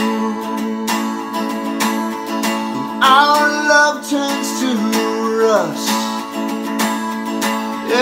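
Guitar strummed steadily through a ringing chord, a few strokes a second, with a brief wordless vocal glide around the middle.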